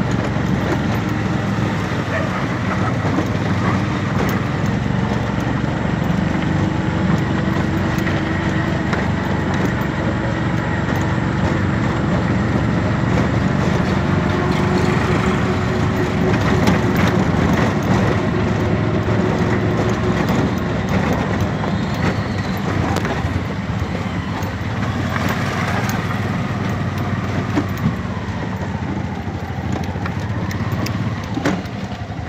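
Auto-rickshaw driving along a road, heard from inside: the steady low drone of its motor with road noise, and a sharp knock near the end.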